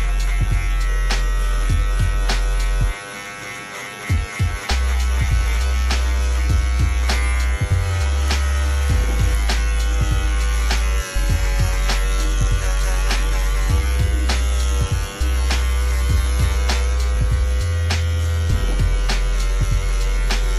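Shunmei 808A cordless hair clipper buzzing steadily as it cuts short hair, under louder background music with a heavy bass and a steady beat.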